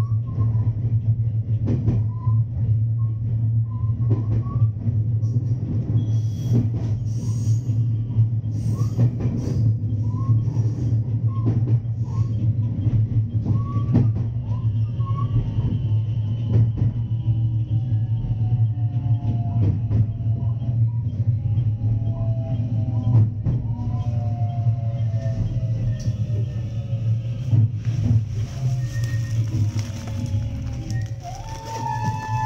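Electric commuter train heard from the driver's cab, running slowly and braking along a station platform: a steady low hum with rail-joint clicks and short wheel squeals. Falling whines appear in the second half as the train slows.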